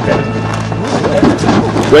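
Wrestlers' feet and bodies knocking on the boards of a backyard wrestling ring in a short run of thuds, with faint voices and a steady low hum behind.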